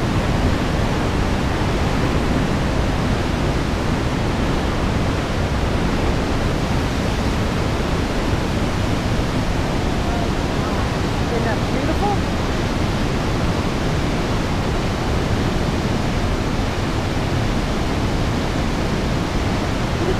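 The Mistaya River rushing through a narrow rock canyon: a steady, loud, unbroken rush of white water.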